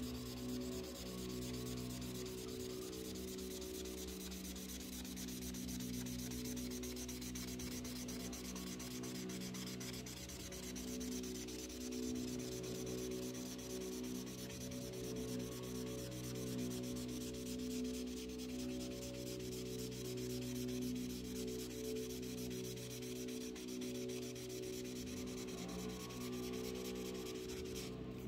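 Imagine Ink mess-free marker tip rubbing back and forth on a coloring-book page as a picture is filled in, with soft sustained background music underneath.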